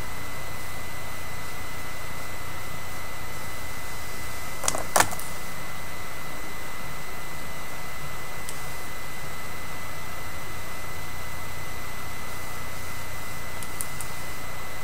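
Steady background hiss and hum with a thin constant high tone, and one brief click about five seconds in.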